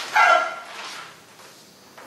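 A sharp click, then a single short, high-pitched call that falls in pitch, like one bark.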